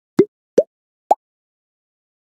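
Intro sound effect of three short pops, each with a quick upward flick in pitch and each higher than the one before, all within about a second.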